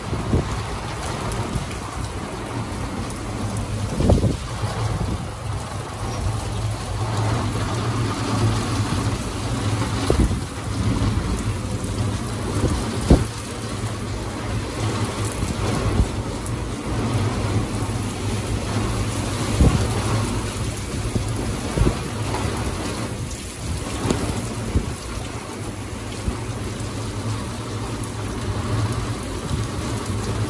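Heavy rain falling steadily, with scattered sharp taps and a steady low hum underneath.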